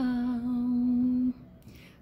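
A woman's voice singing an Ilocano praise and worship song unaccompanied, holding one long steady note that ends about a second and a quarter in.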